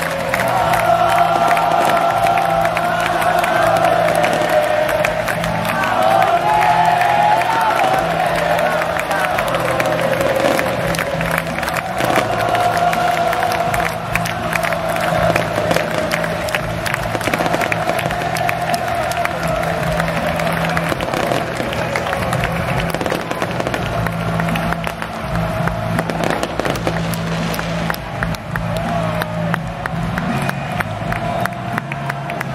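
A large crowd singing and cheering together, with fireworks crackling and popping overhead the whole time.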